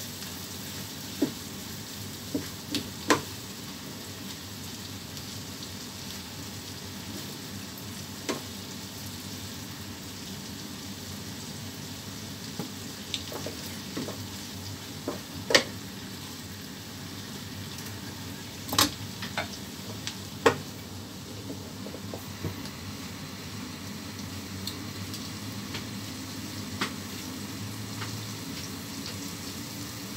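Shrimp, green chilies, garlic and ginger sizzling steadily in a hot nonstick frying pan, with scattered sharp knocks of a wooden spatula against the pan as the food is stirred; the loudest knock comes about halfway through.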